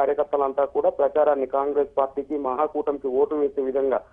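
Speech only: a man reporting in Telugu, talking without pause.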